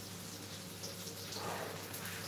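Pork schnitzel frying in oil: a faint, steady sizzle.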